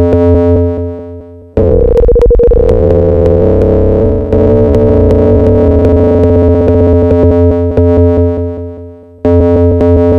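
Elektron Machinedrum SPS-1 UW playing buzzy, sustained FM synth tones whose timbre is shifted by a square-wave LFO. One tone fades out in the first second and a half, a new one starts and churns for several seconds before fading, and another starts near the end.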